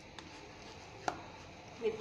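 Hand squeezing and mixing minced chicken paste in a bowl, with a couple of small clicks, the sharpest about a second in.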